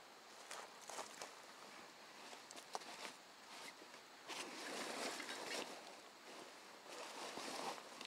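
Faint rustling and small knocks of a rucksack being opened and handled as a radio in its carrier case is pulled out of it, with a louder stretch of rustling in the middle.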